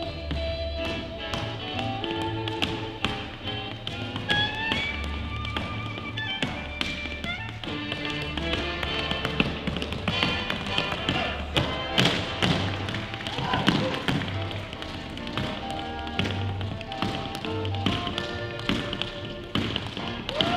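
Tap shoes striking a wooden dance floor in quick, rhythmic runs of taps, over swing jazz music.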